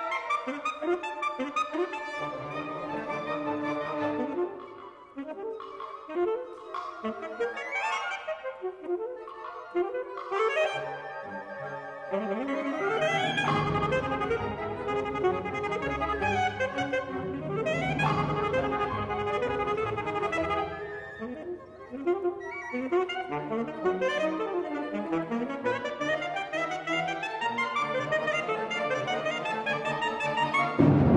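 Wind ensemble music with an alto saxophone soloist: busy woodwind lines with fast rising runs. Lower band instruments fill in more heavily about twelve seconds in.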